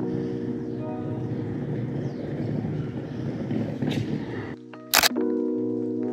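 Background music with held chords, over street ambience that drops out about four and a half seconds in; just after, a camera shutter fires with a sharp double click.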